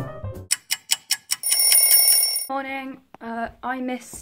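A clock ticking, speeding up, then an alarm bell ringing for about a second. The music ends just before it and a woman's voice follows.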